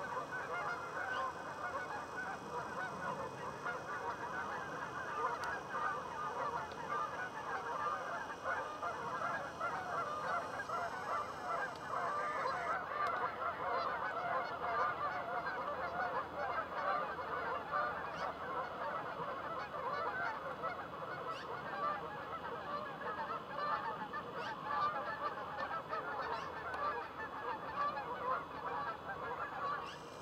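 A large flock of geese honking, with many calls overlapping in a dense, unbroken chorus.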